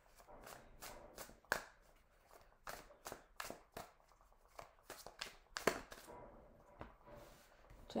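A deck of tarot cards being shuffled and handled, with irregular sharp snaps and flicks of the cards. Near the end, cards are dealt onto the table.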